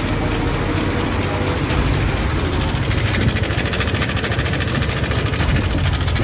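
Yamaha Aerox scooter engine running with a loud, rapid, even chopping noise, the 'helicopter' sound. The mechanic suspects a fault in the crankshaft or connecting rod.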